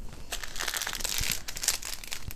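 Small plastic packets of diamond-painting drills crinkling as they are handled, with a crackly rustle most of the way through.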